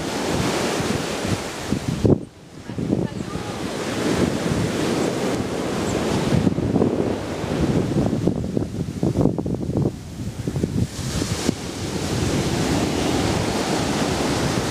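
Sea waves breaking and washing up a sandy beach, with wind buffeting the microphone. There is a brief loud thump about two seconds in.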